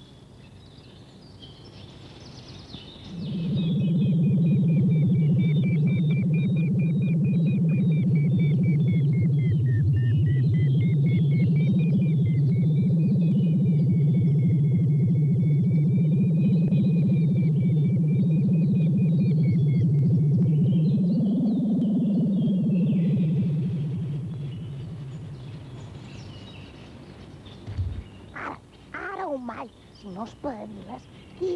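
Electronic synthesizer drone: a loud low buzz with a thin, wavering high tone above it, starting about three seconds in and fading out over the last few seconds before the end.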